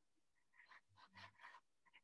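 Near silence, with a few faint, short scratches of a pencil drawing on watercolour paper in the middle of the stretch.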